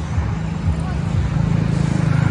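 Engine running with a steady low rumble that grows louder about a second in.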